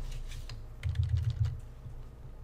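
A run of quick clicks and taps on a computer keyboard and pen tablet while text is deleted, with a cluster of clicks and dull knocks about a second in.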